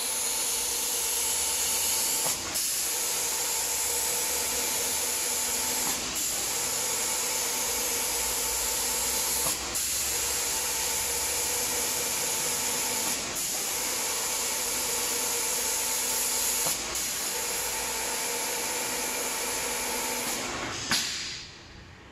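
Compressed-air spray guns of an automatic door-painting machine hissing steadily as they spray, over a faint steady machine hum, with a brief break about every three and a half seconds between passes. The hiss cuts off about a second before the end, followed by a few clicks.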